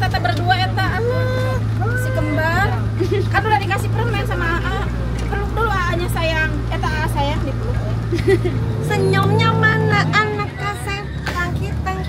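Engine of an open-sided tour bus running with a steady low hum, its note shifting about nine seconds in, under the chatter of children and adults on board.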